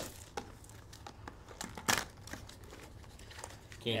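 A sealed trading card box being torn open by hand: plastic wrap crinkling and cardboard tearing, in scattered sharp crackles, loudest about two seconds in.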